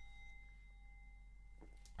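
Near silence, with a faint, steady high ringing tone that stops just before the end.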